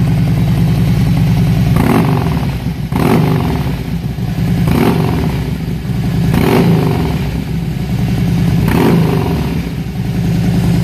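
2011 Harley-Davidson Fat Bob's V-twin running through Freedom Performance slip-on mufflers, idling and blipped about five times, each rev rising quickly and dropping back to idle.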